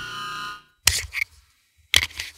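Logo intro sound effects: a ringing sound fades out, then a sharp hit just before the middle is followed by a short high tone, and after a brief silence another sharp hit comes at the end.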